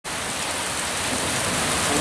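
Heavy downpour of thunderstorm rain falling on a paved, flooded yard: a steady, dense hiss.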